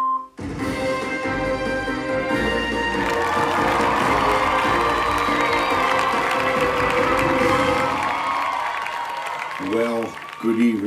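Show intro music with studio-audience applause and cheering, which builds from about three seconds in and eases off near the end. A man's voice starts just before the end.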